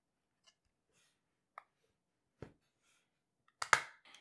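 Light handling clicks of the Argon Pod display and pod case, then a sharp double snap near the end as the display's snap-fit pins click into the pod case.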